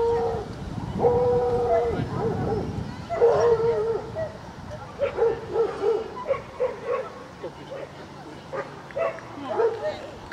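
A dog howling in two long drawn-out cries, then giving a quick run of short yelps, about two or three a second, with more near the end.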